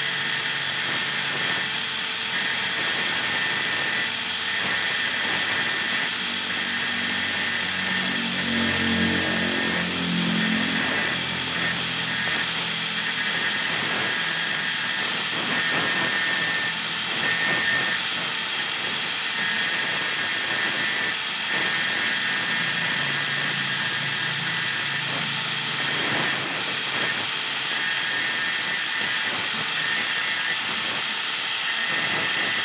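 Electric angle grinder running steadily with a high whine, its disc grinding against the end of a stainless steel wire.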